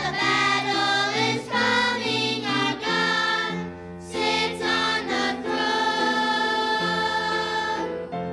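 Children's choir singing a song, phrase by phrase, then holding a long note over the last couple of seconds.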